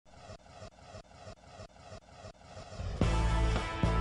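Intro music for a news channel: a pulsing beat about three times a second over a rising low swell, then a loud hit about three seconds in that opens into music with held notes.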